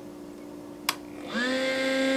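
A single click as a Soleil 250-watt ceramic heater is switched on, then about half a second later a steady electrical hum starts. The heater's fan is running, and the 12-volt power inverter feeding it is taking the load.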